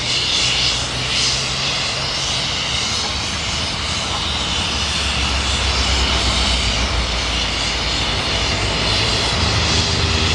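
Two steam locomotives, 5910 and Bronzewing, hauling a train across a road overbridge, making a steady roar of exhaust and running gear, mixed with passing road traffic.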